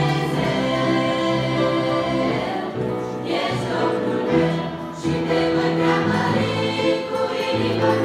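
Girls' choir singing, holding long notes that change about every second.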